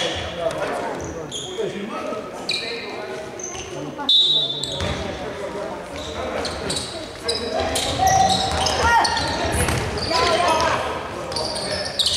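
Basketball game on an indoor court: a ball dribbling on the wooden floor, short high sneaker squeaks, and indistinct shouts from players and the bench, echoing in the hall.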